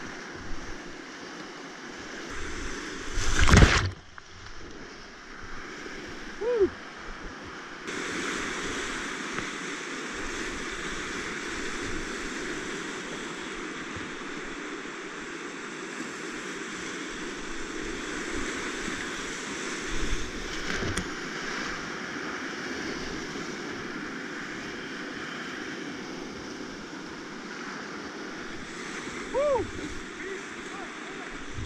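Big whitewater rapids rushing and crashing around a kayak, picked up by a kayaker's helmet camera, with a loud burst of splashing about three and a half seconds in and a smaller one about twenty-one seconds in. The rush grows louder about eight seconds in.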